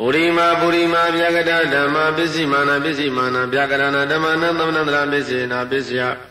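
Burmese Buddhist monk's male voice chanting Pali paritta verses in one long drawn-out phrase on a nearly steady pitch, starting and stopping abruptly.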